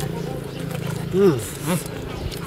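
A man hums "mmm" twice while chewing a mouthful of food: two short hums that rise and fall in pitch, about half a second apart, the first the louder. A steady low hum runs underneath.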